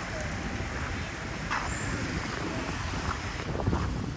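City street ambience: a steady rumble of road traffic.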